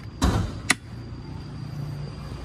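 Mitsubishi Pajero's bonnet release lever pulled under the dashboard: a thud as the bonnet latch pops about a quarter second in, then a single sharp click.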